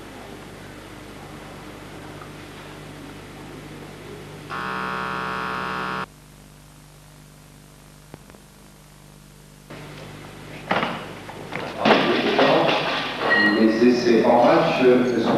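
A steady buzzing tone that starts and stops abruptly and lasts about a second and a half. After a quieter pause come knocks and then loud voices near the end.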